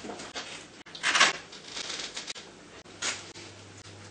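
Short rasping and rustling handling sounds as picture cards and a sentence strip are handled on a tabletop picture communication book, the loudest rasp about a second in and a shorter one near three seconds.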